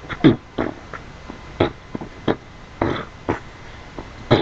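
A run of about eight short vocal grunts, spread unevenly, each dropping in pitch, picked up by a thin-sounding webcam microphone with no music under it.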